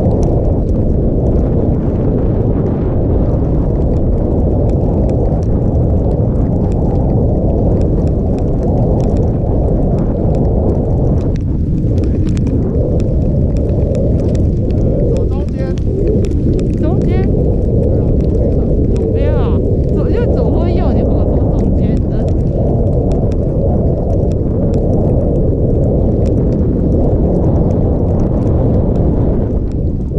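Steady, loud wind rushing over a GoPro's microphone while skiing downhill at speed.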